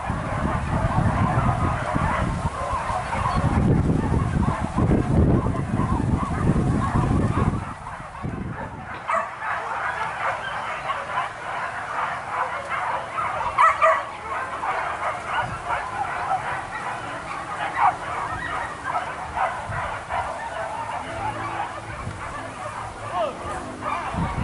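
A pack of hunting dogs barking and yelping, with human voices mixed in. A heavy low rumble, like wind on the microphone, lies under it and stops abruptly about eight seconds in.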